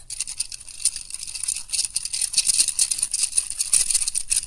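Flexible Lego platform of plastic plates and bricks rattling and clicking in the hands as it is bent and flexed. It makes a dense run of small plastic clicks that grows busier about halfway through.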